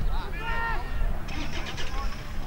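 Raised, shouted voices of players or spectators calling out during a football contest, with a short hissy rattle in the second half and a low uneven rumble underneath.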